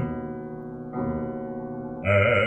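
Piano accompaniment holding a sustained chord between sung phrases, with a new chord struck about a second in.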